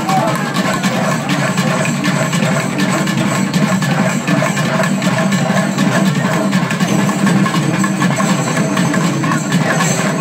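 Loud festival music with percussion over the dense din of a large crowd, running without a break.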